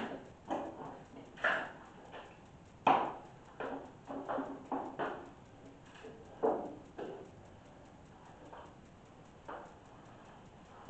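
A ladder being moved and set up: a series of irregular knocks and clunks, the sharpest about three seconds in and another near six and a half seconds.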